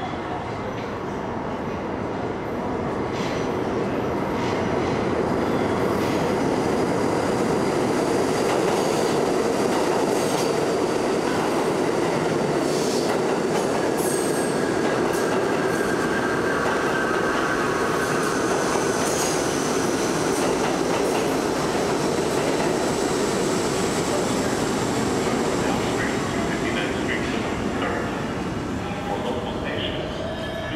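R32 subway train passing through the station at speed without stopping. The rumble builds over the first few seconds, holds, then fades near the end, with wheel squeal and sharp rail-joint clacks in the middle.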